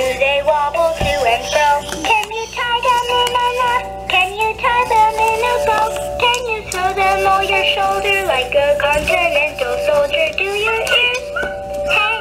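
Electronic singing toy playing a children's song: a childlike recorded voice sings a melody over a music backing.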